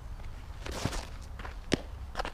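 A softball pitch on a dirt field: a short scuff of the pitcher's stride on the dirt, then a single sharp smack near the end as the softball lands in the catcher's mitt, over a steady low rumble.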